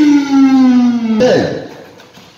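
A man's loud, drawn-out call: one long held vowel that slides slowly down in pitch and breaks off a little over a second in.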